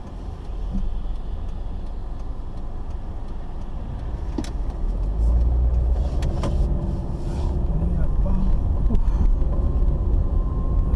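Car driving noise heard from inside the cabin: a steady low engine and road rumble that grows louder about halfway through, with a few scattered light clicks.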